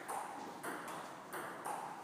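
Table tennis balls clicking off tables and bats, a few sharp ticks spaced irregularly.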